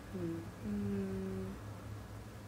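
A woman humming with her mouth closed: a couple of short falling notes, then one held note of about a second that stops halfway through.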